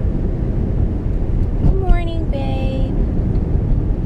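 Steady low road and engine rumble inside a moving car's cabin. A short vocal sound from a person rises over it about halfway through.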